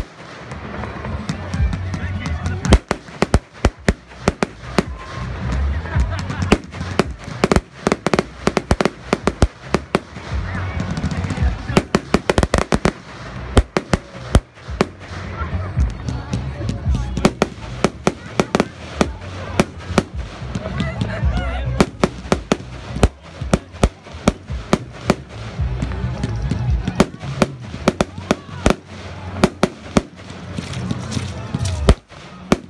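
Aerial firework shells launching and bursting in quick succession: many sharp bangs, close together throughout, over a steady low rumble.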